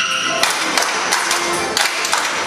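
Lively Ukrainian folk dance tune played on accordions, with sharp taps in time, about three a second.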